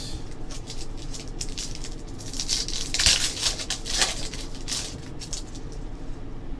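Trading cards being flipped and handled: a run of light clicks and rustles, busiest about two to three seconds in, with a couple of sharper clicks.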